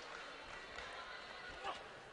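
Faint, steady background noise of a boxing hall during a bout, with a brief soft sound near the end.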